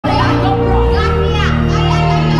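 Two girls singing into microphones over a karaoke backing track, with held low notes of the music underneath their voices.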